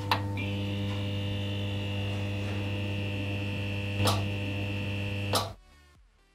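Electric buzz of a lit neon sign: a steady mains hum with a high whine above it. It switches on with a click, flickers with a short crackle about four seconds in, and cuts off with a last crackle about a second later.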